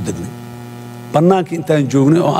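A man's amplified speech breaks off, leaving a steady electrical hum from the sound system alone for about a second. His speech picks up again over the hum past the middle.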